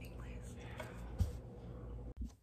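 A young woman whispering softly, with one dull bump about a second in, over a steady low room hum.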